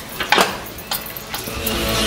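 A few sharp metal clicks and knocks from hand-tool work on the truck's trailing-arm bolt and frame. Loud rock music comes in near the end.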